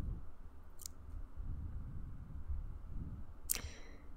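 Low, steady room rumble with two short clicks: a faint one about a second in and a sharper one with a brief ringing tail near the end.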